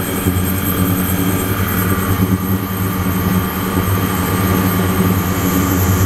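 Ultrasonic cleaning tank running with its water circulating: a steady buzzing hum with a high hiss over it, from the ultrasonic transducers driving the stainless steel bath and the liquid circulation pump.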